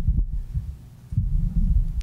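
Handling noise from a microphone on a table stand as it is slid across the table and grasped: low thuds right at the start, then a longer low rumble in the second half.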